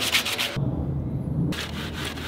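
Sandpaper scraping along a hand-carved cedar baseball bat in quick back-and-forth strokes, several a second. About half a second in the sound changes abruptly to softer, duller rubbing: a rag being wiped along the wood.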